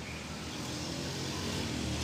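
Steady outdoor background noise with a low rumble, growing slightly louder toward the end.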